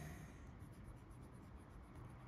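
Faint scratching of a Caran d'Ache Dunas fountain pen's fine steel nib moving across paper as a word is handwritten.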